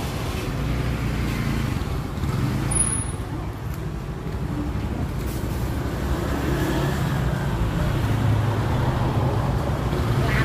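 Street traffic: a steady low rumble of passing motor vehicles.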